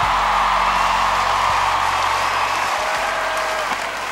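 Studio audience applauding and cheering at the end of a song, with the backing track's low notes still sounding underneath and fading out.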